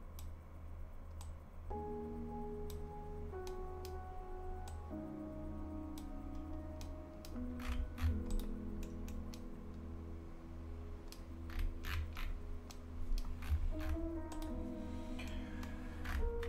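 Soft background music of slow, sustained chords that change every few seconds, with scattered computer mouse and keyboard clicks over a steady low hum.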